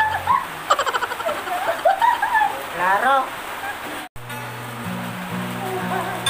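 A woman laughing in fast, breathy bursts with a few words, as an acoustic guitar chord dies away. About four seconds in, the sound drops out for a moment and the acoustic guitar starts playing low notes again.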